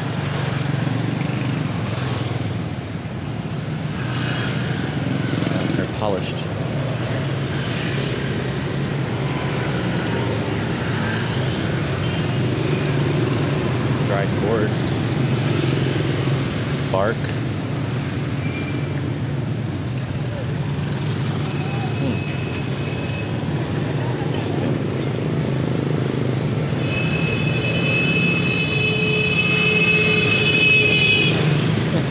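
Steady drone of motorbike and scooter traffic going by along a street. Near the end a scooter's horn starts and is held on continuously.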